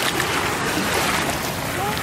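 Sea water churning and sloshing against a kayak's hull as a whale surfaces right alongside it, a steady rush mixed with wind noise on the microphone.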